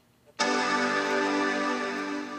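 White MacBook's startup chime: one held chord that starts suddenly about half a second in. The chime means the newly installed RAM is seated correctly.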